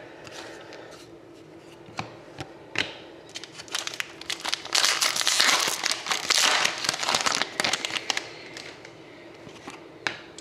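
A foil trading-card pack is torn open and crinkled by hand. A few scattered crackles come first, then about halfway through a dense stretch of crinkling lasts two or three seconds before it thins out.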